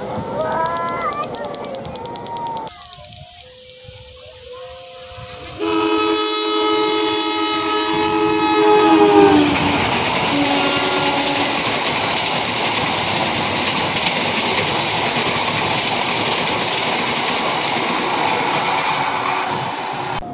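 Diesel locomotive horn sounding a long chord for about four seconds, then a short second blast, as the train passes close by. The steady rumble and clatter of the train passing follows.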